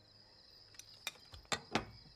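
Quiet indoor ambience with a faint steady high-pitched tone and a few soft knocks and clicks, two stronger ones close together in the second half.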